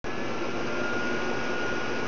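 Steady hiss with a faint, constant high-pitched hum running through it.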